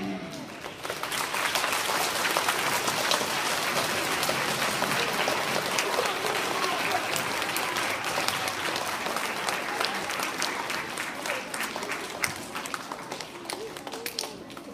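Audience applauding. The clapping swells within the first second, holds, then thins out near the end.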